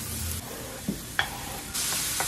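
Chopped vegetables sizzling in hot oil in a frying pan while a metal spatula stirs them, with a couple of light clicks of the spatula against the pan. The sizzle gets louder near the end.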